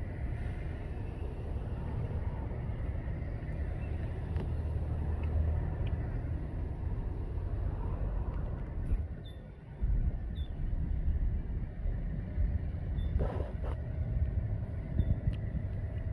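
Steady low rumble of road traffic, with a brief lull a little before ten seconds in.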